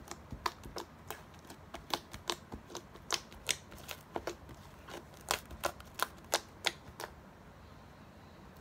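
Fingertips poking, pressing and pinching a mound of slime, giving an irregular run of sharp clicks and pops, about two to four a second, that stop about a second before the end.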